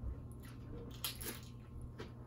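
Loaded tortilla-chip nachos being bitten and chewed, with a few faint crunches and wet mouth sounds.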